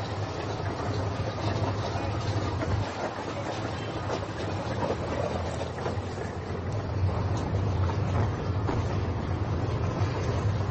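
Steady low rumble of vehicle engines running, under a haze of outdoor background noise, with a few faint clicks.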